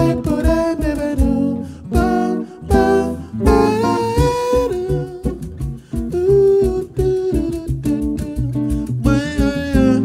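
Jazz guitar on a double-neck archtop, picked chords and lines, with a man's wordless vocal melody gliding over it.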